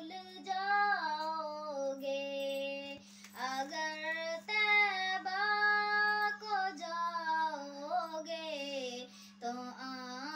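A young girl singing a poem in Hindi, unaccompanied, with long held notes that glide between pitches; she breaks for a breath about three seconds in and again near the end. A steady low hum runs underneath.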